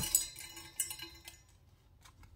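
Trading cards being handled: short crinkly rustles and light clicks for about a second and a half, then dying away.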